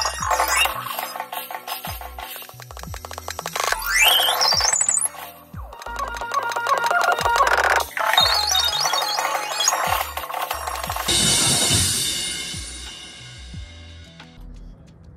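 Marching band front ensemble playing: fast marimba runs, some sweeping upward, over a stepping synthesizer bass line. About eleven seconds in the phrase ends on a cymbal crash that rings down.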